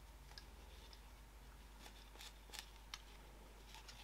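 Near silence with a few faint, short scratching and clicking handling sounds in the second half: fabric webbing being threaded through a plastic side release buckle.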